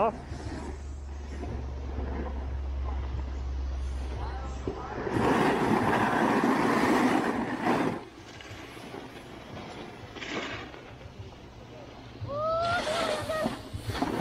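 Snowboard edge scraping and sliding over packed snow, loudest in a long scrape from about five to eight seconds in. Before it, a steady low rumble of wind on the microphone.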